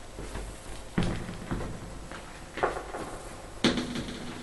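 A few knocks and thumps as a person moves about a room and handles things: one about a second in, another a little past the middle, and the loudest near the end.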